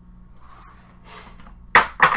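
Faint handling and shuffling noises over a low steady hum, then two sharp, loud knocks close together near the end as a computer is moved into place on a desk.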